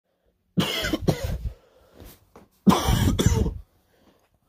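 A man coughing into his fist in two bouts: the first about half a second in, two hacks close together, the second just under three seconds in, each lasting about a second.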